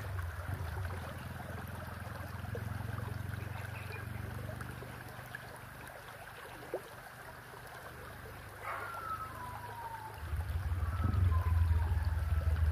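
Shallow creek water running over stones, under a steady low rumble that grows louder near the end. A few short falling whistles sound about nine and eleven seconds in.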